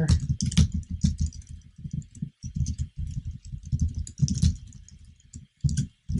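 Typing on a computer keyboard: a fast, irregular run of keystrokes with a couple of short pauses.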